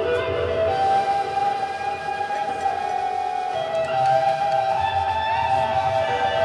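Live band playing, with a lead instrument holding long notes that bend in pitch over the band.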